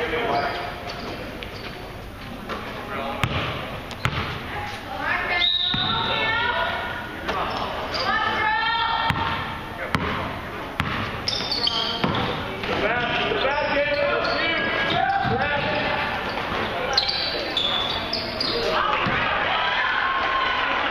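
A basketball dribbled on a gym's hardwood floor, bouncing repeatedly in short sharp knocks, with voices calling out throughout.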